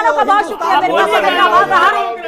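Speech only: several voices talking loudly over one another in a heated studio debate.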